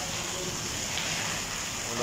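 Heavy rain falling steadily onto a wet concrete courtyard floor, an even, unbroken patter of drops.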